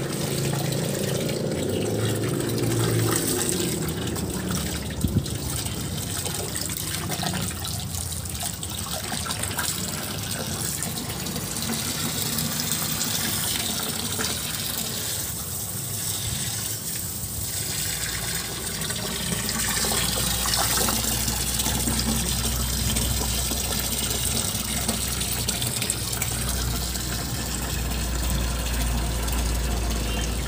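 Water gushing from a pipe into a fish pond, splashing steadily onto the surface.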